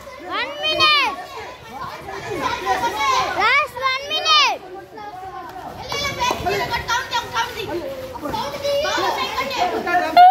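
A group of children shouting and calling out, with several loud high calls that rise and fall in pitch in the first half and overlapping voices after that.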